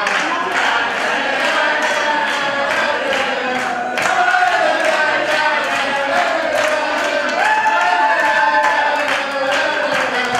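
A group of people singing a tune together, with rhythmic hand clapping at about three claps a second keeping the beat.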